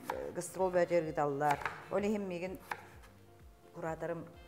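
Kitchen knife chopping food on a cutting board in quick, even strokes, several a second, with a woman's voice over the first half.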